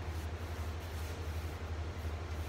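Steady low engine rumble of big trucks from a tree-trimming crew, with an even hiss above it.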